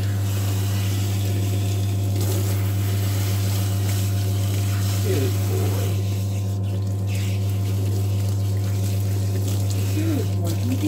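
Recirculating dog-bath pump running with a steady low hum while it sprays diluted shampoo water from the hand-held nozzle onto the dog's wet coat.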